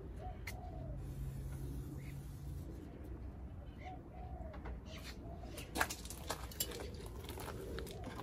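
A bird calling softly twice, a low note that rises and falls, about four seconds apart, with a few light clicks and knocks about six seconds in.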